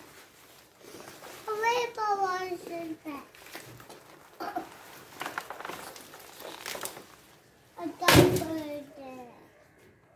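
A young child's voice, babbling and calling out in gliding, sing-song tones, with a loud sudden sound about eight seconds in.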